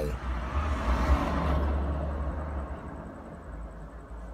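A road vehicle passing close by, heard from inside a stationary car: its engine rumble and tyre noise swell and then fade away over about two to three seconds.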